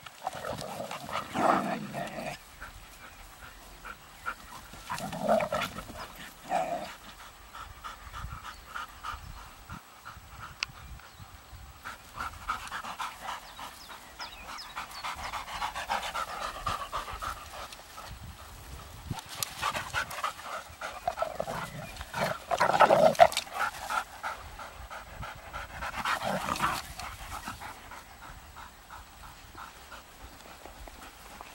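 Dogs at rough play, a young Airedale terrier and a large brown dog, panting, with several louder bursts of play noise. The loudest burst comes about two-thirds of the way through.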